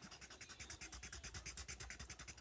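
Faint, rapid coloring strokes on paper, an even back-and-forth scratching at about a dozen strokes a second.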